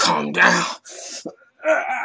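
A man groaning and snarling in strained vocal bursts as he play-acts a werewolf transformation. There is a loud groan in the first second, breathy sounds after it, and another shorter groan near the end.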